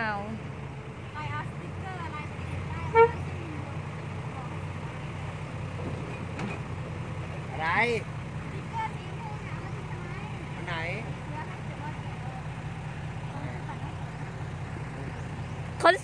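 Diesel engine of a Hino dump truck running steadily at low revs as the truck drives slowly over loose sand.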